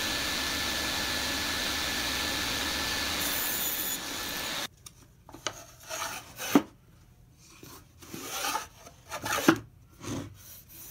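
Table saw running steadily with a thin motor whine, stopping abruptly about four and a half seconds in. Then a wooden sliding lid scrapes and rubs as it is pushed along the dado grooves of a small Baltic birch plywood box, with two sharp wooden knocks.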